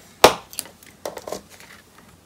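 Cardstock and a bone folder handled on a plastic scoring board after a score line is made: one sharp knock about a quarter second in, then a few lighter clicks and paper rustles as the scored card is lifted off the board.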